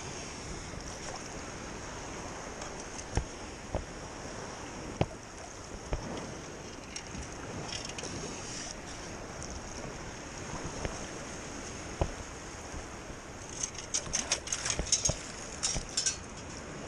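Shallow surf sloshing and swirling around the legs while a long-handled metal sand scoop digs into the bottom, with a few scattered knocks. Near the end comes a quick run of sharp clinks, as of gravel and shell rattling in the scoop.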